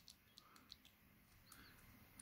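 Near silence, with a few faint, short clicks of small plastic LEGO pieces being handled.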